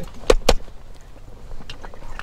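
Two sharp knocks close together about half a second in, then a few lighter clicks: handling noise close to the camera in a brush-covered hunting blind.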